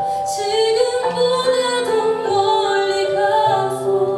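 A woman singing a slow song into a microphone over instrumental backing, holding long sustained notes.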